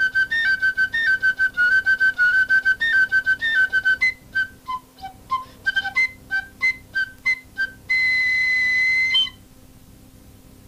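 Solo piccolo playing a fast run of short, detached notes high in its range, dipping lower for a few notes in the middle. It ends on one long held high note that stops about nine seconds in.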